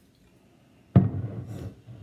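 A glass whiskey bottle set down on a tabletop: one sharp thud about halfway through, fading over about a second.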